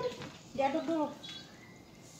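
A short, high-pitched vocal sound from a person about half a second in, its pitch rising then falling, followed by low room sound.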